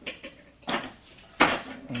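Hard plastic and metal parts of a hot air edge bander being handled on a workbench: three sharp clacks about 0.7 s apart as the edge-banding roll holder is moved into place.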